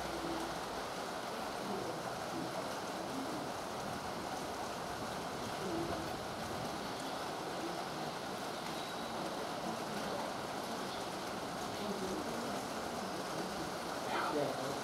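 Steady rain falling, an even, unbroken hiss.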